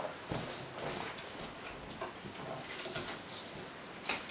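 A quiet room with a few faint, soft taps and rustles of playing cards being handled on a wooden table.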